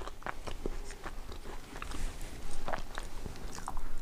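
A person chewing a crumbly butter cookie with the mouth closed: a scatter of small crunches and clicks.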